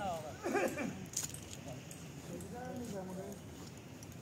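Voices of people talking in the open air, with one sharp click about a second in.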